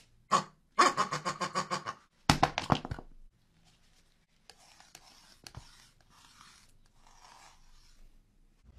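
A person's breathy voice in two loud bursts of quick pulses during the first three seconds, then a metal palette knife scraping and spreading thick paint across a palette in soft, patchy strokes with a couple of light clicks.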